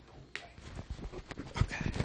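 A run of irregular soft clicks and knocks that grows louder toward the end, with a brief high-pitched sound just before the end.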